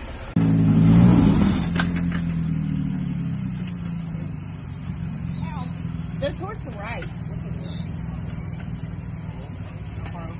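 Jeep engine revving hard as it climbs a rock ledge, starting abruptly half a second in and easing after a couple of seconds to steady running. Faint voices partway through.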